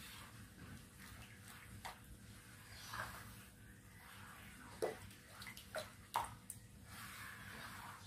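Thin rice-flour and coconut-milk batter stirred with a spatula in a plastic bowl: faint sloshing with a few soft taps and splashes, the loudest about five seconds in and again near six seconds.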